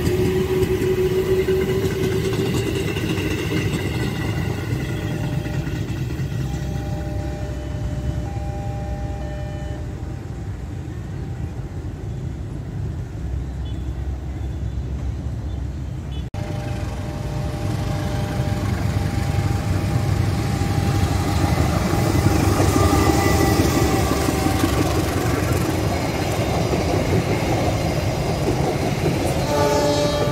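Electric commuter trains running along the line: a steady low rumble of wheels and traction motors. A steady two-note train horn sounds about a third of the way in and again for several seconds after a cut past the halfway mark, and another horn starts at the very end as a train passes close.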